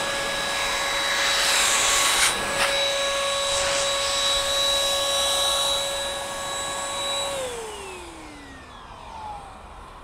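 Chemical Guys ProBlow handheld electric blower running at full speed while blowing water off a car windshield: a steady motor whine over rushing air. About seven seconds in it is switched off, and the whine falls in pitch as the motor spins down.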